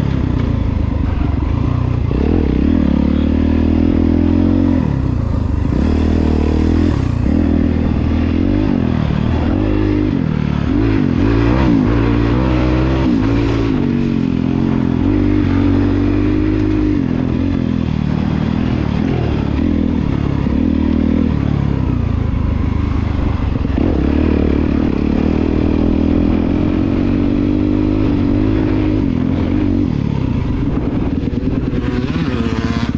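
Single-cylinder four-stroke dirt bike engine, a Honda CRF250R built out to 300cc with a full FMF exhaust, ridden hard off-road, its revs rising and falling every second or so through the throttle and gear changes, with some clatter from the bike.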